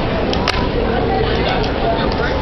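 A fingerboard clicking against a tabletop as fingers push and flip it, with one sharp snap about half a second in and a few lighter clicks later, over a steady loud background noise.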